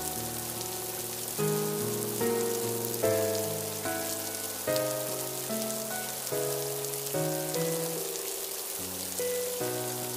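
Steady rain falling on a hard surface, with slow background music of held notes laid over it; the music notes are the loudest part.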